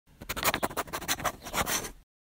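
A rapid, irregular run of scratching and rustling strokes that stops abruptly at the end.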